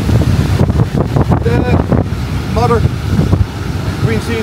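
Strong wind buffeting the microphone, a loud low rumble, over surf breaking against the rocky shore. A couple of brief voice sounds come around the middle.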